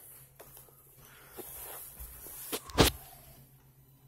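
Handling noise: soft rustles and small clicks, then two sharp knocks close together about two and a half seconds in.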